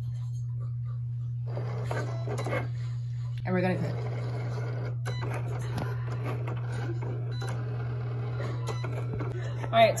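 Cricut cutting machine running as its carriage cuts card stock, over a steady low hum, with indistinct voices talking in the background.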